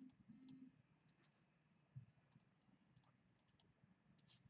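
Near silence with a few faint, scattered clicks: a stylus tapping on a pen tablet as a word is handwritten.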